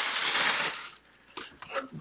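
Plastic wrapping crinkling and rustling as it is pulled off a replica football helmet, stopping about a second in; a few faint knocks follow as the helmet is handled.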